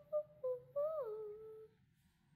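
A girl humming a short tune: a few short notes, then a longer note that dips in pitch and trails off shortly before the end.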